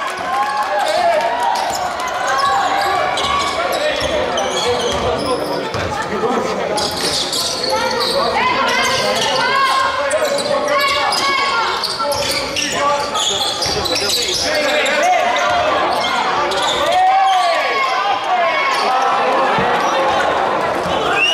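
Live basketball play on a wooden gym floor: the ball bouncing as it is dribbled, with players and spectators calling out in the hall.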